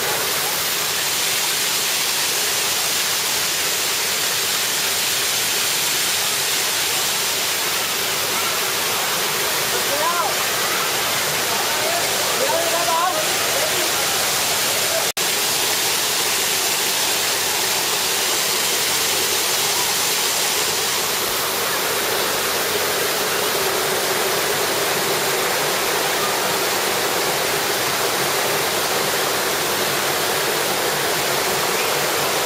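Waterfall pouring into a pool: a steady, even rush of falling water. Faint voices come through briefly about ten to thirteen seconds in.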